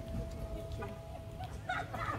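Wind rumbling on the microphone outdoors, with a faint steady tone that holds until about a second and a half in. Just before the end a burst of busier, higher chattering sounds joins in.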